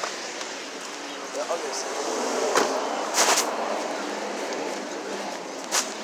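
Clothing rustling and rubbing against a phone's microphone as it is carried against a jacket, over steady outdoor background noise. There are a few brief scuffs, the loudest about three seconds in.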